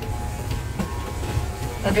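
Corded electric hair clippers buzzing steadily while cutting a child's hair.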